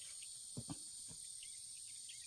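Faint, steady high-pitched chirring of crickets, with two or three soft low knocks about half a second to a second in.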